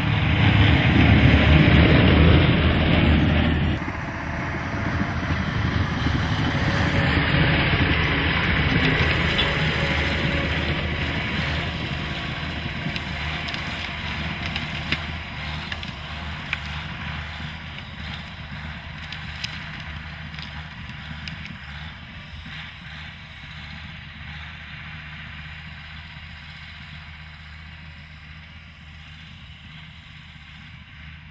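ALLTRACK rubber-tracked carrier's engine running under load with loud water splashing for the first few seconds, a second loud stretch of splashing and engine noise around seven seconds in, then the engine fading steadily as the machine moves away up a slope.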